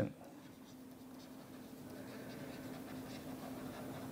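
Faint scratching and tapping of a stylus writing on a tablet screen, over a steady low hum.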